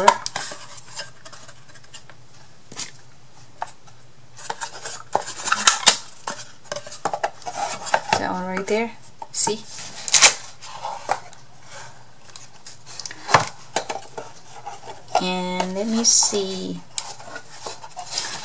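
Thin wooden craft pieces knocking and clattering as a small wooden drawer is handled and slid into a wooden drawer unit, with scattered sharp clicks and taps.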